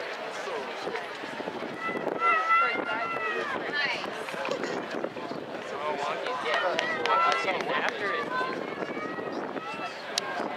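Spectators shouting and cheering for passing runners, several voices overlapping with no clear words, loudest in long drawn-out yells about two seconds in and again around seven seconds.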